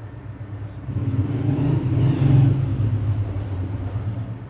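Low engine rumble that swells about a second in, peaks around the middle and eases off again, over a steady low hum.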